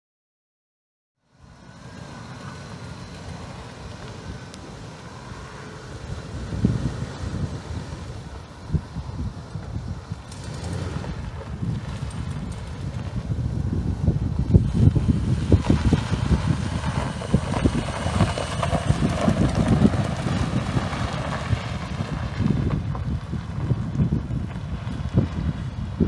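Dodge Ram 2500HD pickup's 5.7-litre gas V8 running as the truck drives across a gravel lot, heavily buffeted by wind on the microphone. Sound begins after about a second and a half of silence and grows louder around a quarter and again about halfway through.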